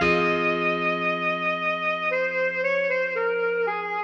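Alto saxophone melody over a sustained backing chord: one long high note, then a short run of quicker notes about halfway through.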